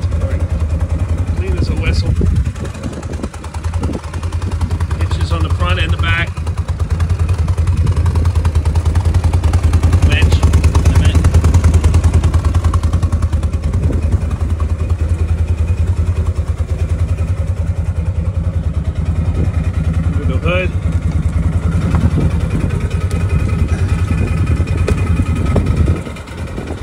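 ODES Dominator Zeus side-by-side's engine running at idle: a steady low rumble, a little louder around ten seconds in.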